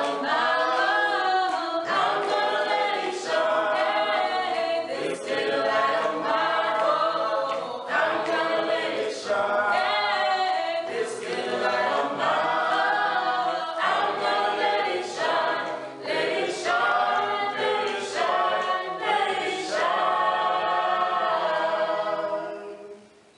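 A small mixed group of men's and women's voices singing a cappella in harmony, with no instruments.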